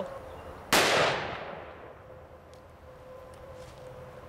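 A single .500 Magnum gunshot about three-quarters of a second in, fired into the door of a steel gun safe. It is a sharp crack with a ringing tail that dies away over a second or two.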